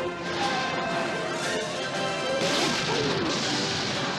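Movie trailer soundtrack: orchestral music with crash and impact sound effects, the loudest a noisy crashing burst about two and a half seconds in that lasts under a second.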